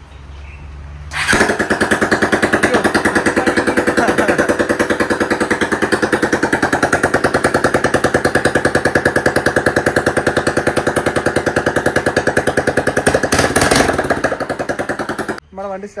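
A freshly fitted 220 cc single-cylinder motorcycle engine starts up about a second in and runs at a fast, even idle in a stripped-down frame, with a brief rise in revs near the end. It then stops abruptly.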